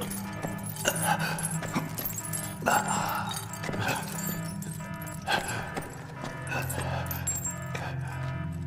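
Film soundtrack: a low, sustained music drone, with several short strained vocal outbursts over it about one, three, five and six and a half seconds in.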